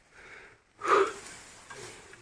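A person breathing hard close to the microphone, with one audible breathy exhale about a second in that fades away, winded from the hike.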